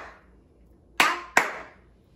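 Two hand claps about a second in, a third of a second apart, clapping out the two syllables of the word "apple".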